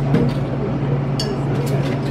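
Bar room ambience: indistinct background chatter over a steady low hum, with a few light clinks of glass about a second in and again near the end.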